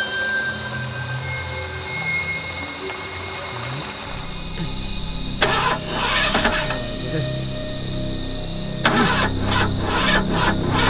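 Film soundtrack: music over a steady high chirring of insects. About five seconds in, a van's engine is cranked and fires, with a second sudden cranking burst near the end.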